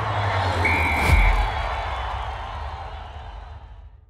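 Promo sound-effect sting of stadium crowd noise, with a short whistle blast just under a second in and a deep boom about a second in, then fading out.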